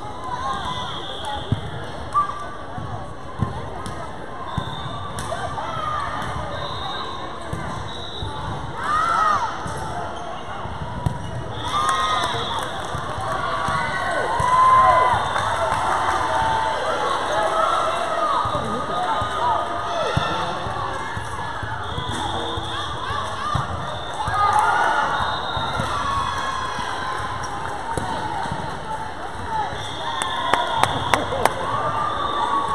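Volleyball rally sounds in a large gym: a few sharp smacks of the ball being hit in the first few seconds and another about eleven seconds in, over players and spectators calling out, louder in the middle.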